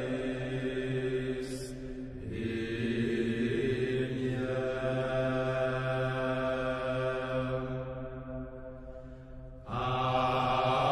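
Background music of slow chanting voices holding long notes. The note changes about two seconds in, fades out near the end, and a louder new phrase starts just before the end.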